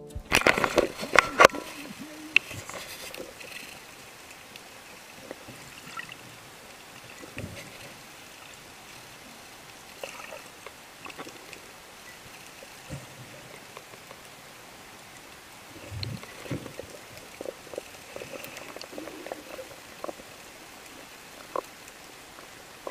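Underwater ambience recorded by a diving camera: a steady hiss of moving water with scattered clicks, sloshes and small knocks. A cluster of loud sharp knocks comes in the first second and a half.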